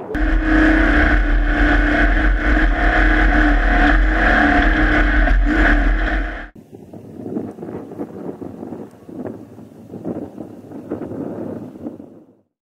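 Trophy truck engine running loud and steady, heard from the cockpit with a deep rumble under it. About six and a half seconds in it cuts off suddenly to a much quieter stretch of irregular knocks and rattles, which fades out near the end.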